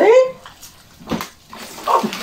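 Handling noise as a heavy shrink-wrapped six-pack of 1.5 L plastic water bottles is hauled up: two short knocks about half a second apart, with faint plastic rustling.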